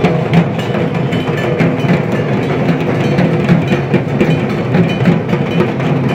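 Dhak drums, the big Bengali barrel drums, beaten with thin sticks in a fast, continuous rhythm of dense strokes.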